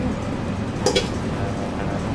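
Metal tongs clink once against a bowl about a second in, a short bright ring over a steady kitchen background.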